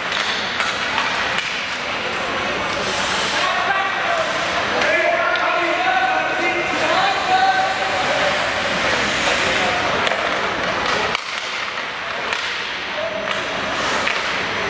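Ice hockey game heard from the stands in an indoor rink: spectators' voices calling out, with sharp clacks of sticks and puck and the swish of skates on the ice. The voices are loudest in the middle and ease off about eleven seconds in.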